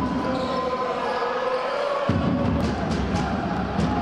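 Basketball game sound in a sports hall: steady crowd noise with a basketball bouncing on the court, and a faint held tone underneath.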